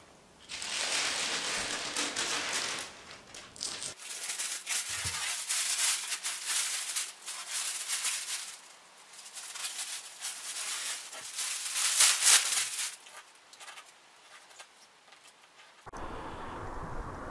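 Masking paper and tape being pulled off a car fender and crumpled: irregular crinkling and ripping in bursts with short pauses, dying away near the end.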